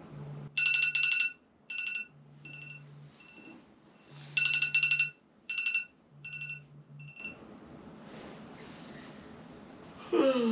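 A smartphone going off on the bed: a bright chiming melody that plays its phrase twice, with the phone vibrating in buzzes about a second long every two seconds. It cuts off about seven seconds in as the phone is silenced by hand.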